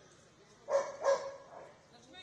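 A dog barking twice in quick succession, two short sharp barks.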